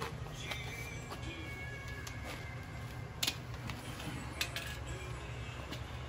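A few light clicks and taps of hand tools and metal parts being handled, with one sharper click about three seconds in, over a steady low background rumble.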